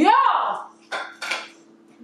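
A plate set down on a stone countertop: two quick clattering knocks about a second in.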